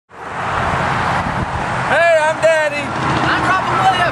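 Steady road traffic noise with a low rumble. About two seconds in, a voice calls out twice in high, wavering tones, followed by talking.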